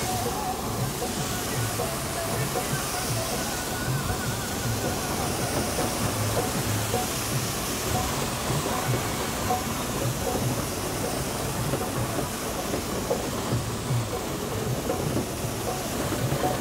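A high-pressure jet of liquid fertiliser spray from a sprayer's hose nozzle hissing steadily, with a low mechanical hum underneath.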